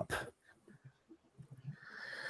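A near-silent pause on a voice call. Right at the start a word is just ending, and near the end a faint breathy hiss comes in, a person breathing into a microphone.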